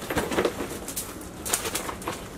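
Plastic garment packaging rustling and crinkling as wrapped clothes are handled, in a string of short, irregular crackles, the sharpest about one and a half seconds in.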